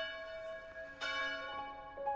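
Church bell tolling: a stroke already ringing out, then a second stroke about a second in, each slowly dying away.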